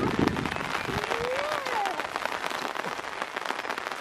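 Rain pattering on an umbrella close overhead: a dense, steady crackle of many small drop ticks.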